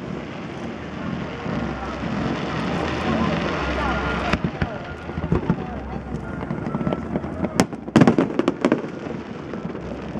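Aerial fireworks display: a continuous rumble of bursts, then from about four seconds in a run of sharp bangs and crackles, densest and loudest around eight seconds in.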